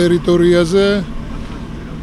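A man speaking for about a second, then a pause filled with steady outdoor street noise with traffic.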